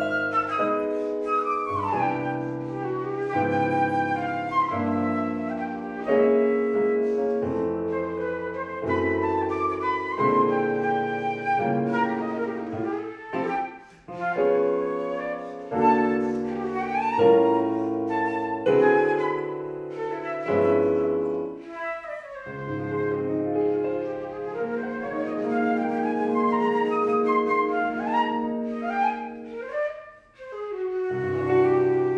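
Flute and Roland RD-800 digital piano playing a duet: the flute carries the melody in held and flowing notes over the piano's chords, with a brief break about halfway through.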